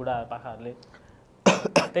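A man coughing twice, sharply and loudly, after a few spoken words.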